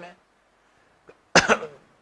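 A man coughs once, short and sharp, about a second and a half in.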